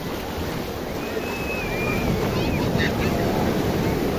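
Ocean surf breaking and washing through shallow water, with wind buffeting the microphone. The surf grows louder about halfway through.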